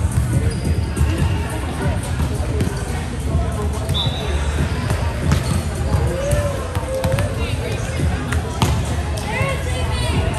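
Volleyballs being hit and bouncing on a hardwood court in a large, echoing sports hall, with many thuds and sharp slaps, short squeaks, and the chatter of many players.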